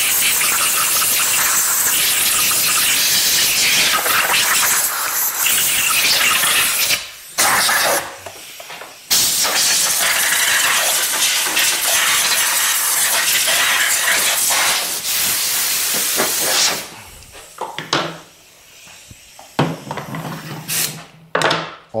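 Compressed-air blow gun blowing dust out of a Honda S-Wing 125's CVT transmission and its cover: long loud hissing blasts, broken briefly about seven and eight seconds in, stopping about seventeen seconds in. A few light knocks of parts being handled follow.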